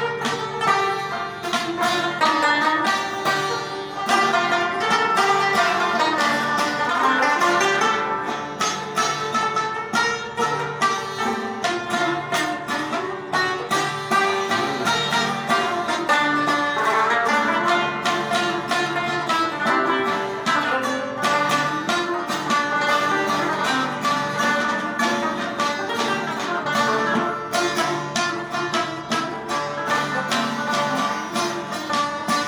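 Afghan rubab and a long-necked lute played together: quick plucked melodic runs over a steady ringing drone, going without a break.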